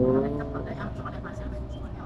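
MTR Tung Chung line train pulling through a station: the electric traction motors give a whine that rises in pitch and levels off about half a second in, over a steady low rumble of the running train, with passengers' voices faintly in the background.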